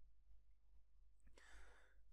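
Near silence: room tone, with a short, soft breath from the lecturer about one and a half seconds in.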